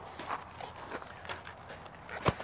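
Faint footsteps: a few soft, irregular steps.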